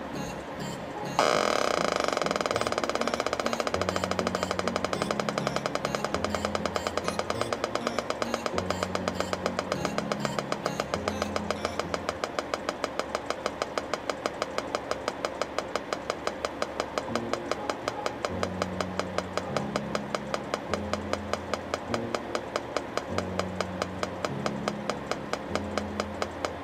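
Electronic roulette game's speaker ticking once per LED step as the light runs around the wheel: a fast, even ticking that starts abruptly about a second in and gradually slows as the 'spin' winds down. Background music with a repeating bass line runs underneath.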